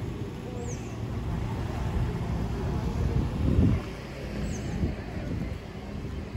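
Town street ambience: a low traffic rumble that swells briefly about halfway, with voices of passers-by and two short high chirps, the first about a second in and the second near the end.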